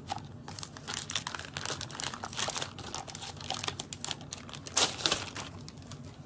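Clear plastic bag crinkling and crackling as a binder is pulled out of it, in a busy run of short crackles with a louder burst of them about five seconds in.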